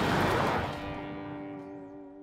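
Toyota four-wheel drive passing by on a gravel road, a rush of tyre and engine noise that fades away within the first second. Under it, a held chord of music fades out.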